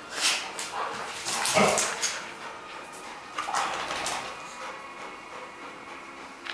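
Dogs at play on a tiled floor, one giving a few short vocal calls; the loudest comes about a second and a half in, and another follows near three and a half seconds.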